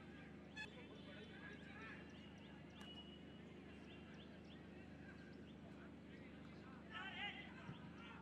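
Near silence: faint pitch-side field ambience, with a faint distant voice or shout about seven seconds in.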